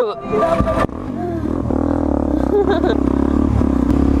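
Suzuki DRZ400SM supermoto's single-cylinder engine pulling away, running steadily with its pitch rising slowly as the bike gathers speed, from about a second in.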